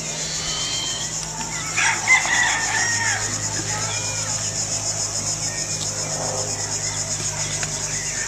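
A rooster crowing once, about two seconds in, over the steady pulsing chirp of crickets. A low steady hum runs underneath.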